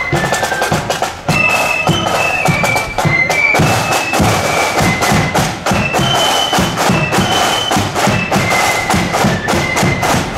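A marching flute band playing a tune: high flutes carry the melody over a steady beat of bass and side drums.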